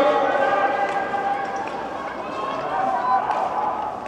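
Indistinct speech, growing fainter over the few seconds.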